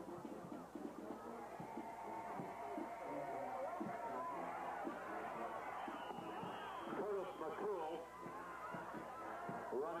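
Football crowd in the stands: many spectators talking and calling out over one another, overlapping voices with no single clear speaker.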